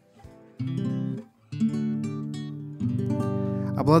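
Nylon-string classical guitar strummed: three chords about a second apart, each left to ring, with a warm, soft tone.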